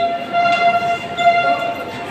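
A loud, steady horn-like tone held at one pitch with strong overtones, stopping shortly before the end.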